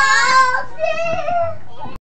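Singing of a children's freeze-dance song, a high voice holding and sliding between notes.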